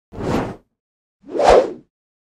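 Two whoosh sound effects of an animated logo intro, a little over a second apart; the second is louder, with a low thump at its peak.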